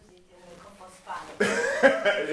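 A loud burst of laughter starting about a second and a half in, after a quiet stretch.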